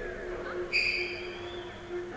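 Arena crowd noise with a steady held tone underneath. About three-quarters of a second in comes a sudden shrill whistle from the stands, which fades within half a second.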